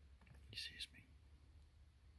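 Near silence, broken about half a second in by a short, breathy human whisper lasting under half a second.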